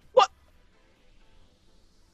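A voice gives one short, clipped exclamation of "what" just after the start, then it is quiet.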